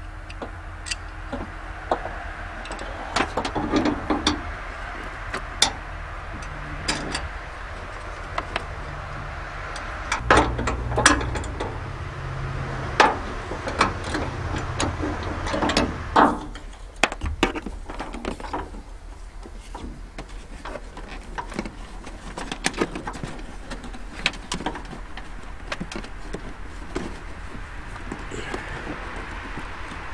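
Irregular metallic clicks and clinks of hand tools and bolts at a Toyota Tacoma's hood hinge bracket. A low hum sits under the clicks for several seconds near the middle.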